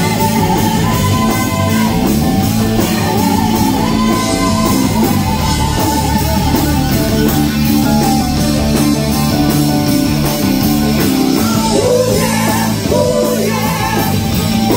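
Live hard-rock band playing loudly: distorted electric guitar, a steady drum-kit beat and several women singing.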